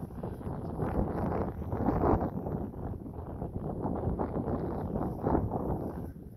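Wind buffeting the microphone, a rough rumbling noise that rises and falls in uneven gusts.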